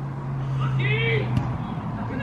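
Shouting from players out on the football pitch, one call about halfway through, over a steady low hum. A single sharp knock comes about one and a half seconds in.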